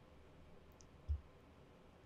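Trading cards being handled and pressed into place by hand on a mat: faint clicks, and one soft low thump about a second in.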